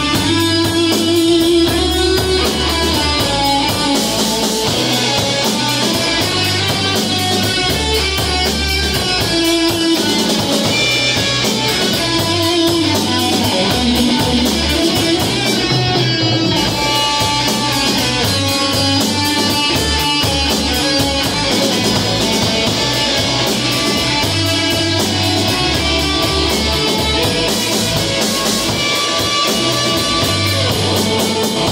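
Live rock band playing an instrumental passage on electric guitars and a drum kit.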